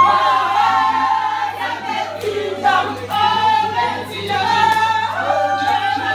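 A group of people singing together in long held phrases, with no drum or instrument strokes to be heard.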